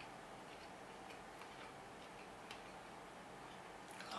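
Near silence: faint closed-mouth chewing of a nori-wrapped rice ball, a few soft irregular clicks over quiet room tone.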